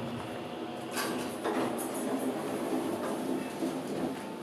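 Schindler 330A hydraulic elevator's doors sliding open on arrival at a floor, the door operator running with some rattling clatter. A low hum stops just as the doors begin to move.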